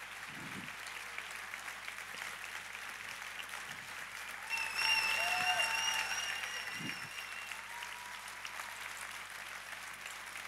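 A large audience applauding after a talk, a standing ovation. The clapping swells about halfway through, when a high held tone rises above it for a couple of seconds, then settles back to steady applause.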